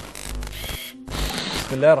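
Two short noisy sound-effect bursts from a TV programme's intro, each with a deep low rumble, separated by a brief silent gap. A man's voice begins just at the end.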